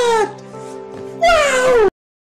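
Two long, high-pitched wailing cries, each falling in pitch, over a held chord of background music. The sound cuts off suddenly just before the end.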